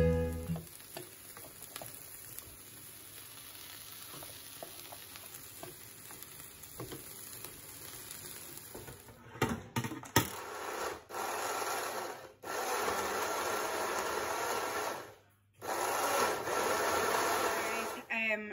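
Food frying in a pan and on an oven tray. A faint low sizzle comes first, then a few clicks, then louder stretches of steady hissing sizzle that stop and start abruptly. Acoustic guitar music fades out in the first half second.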